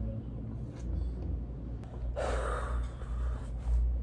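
A woman's heavy, audible breath about two seconds in, lasting about a second, from being hot and short of breath after wearing a face mask.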